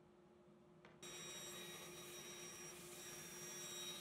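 Near silence for about a second, then a bandsaw starts sounding suddenly and runs steadily: a steady hum with a high, even whine above it.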